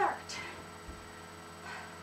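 A steady electrical mains hum on the recording. At the very start a shouted word tails off, falling in pitch, and two soft breaths follow, one just after and one near the end.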